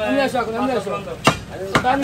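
Butcher's cleaver chopping beef on a wooden stump block: two sharp strikes about half a second apart, past the middle, with men's voices talking over them.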